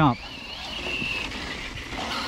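Arrma Notorious RC truck's brushless motor whining as it drives off, the thin whine rising in pitch over about the first second and then holding, over a faint rushing noise.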